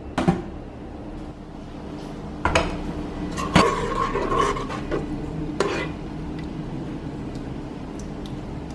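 Metal spoon stirring thick mung bean soup in a stainless steel pressure-cooker inner pot: four sharp knocks and scrapes against the pot, the third ringing briefly.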